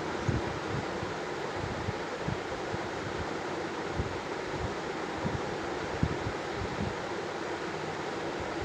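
Steady background hiss and rumble with a few faint, light taps scattered through it.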